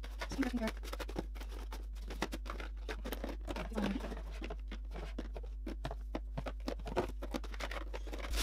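Small plastic bottles and cardboard boxes of cosmetics being handled and lifted out of a drawer: a steady run of light clicks, taps and knocks.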